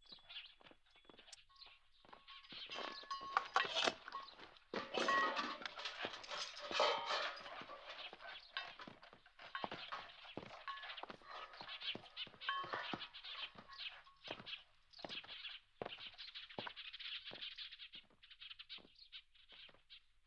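Film soundtrack music mixed with many sharp clicks and knocks, with a few short held tones. It is loudest about a third of the way in.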